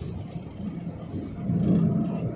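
Low rumbling running noise of a moving vehicle heard from inside it, growing louder near the end.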